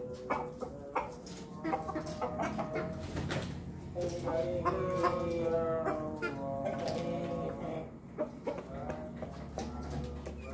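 Domestic chickens clucking.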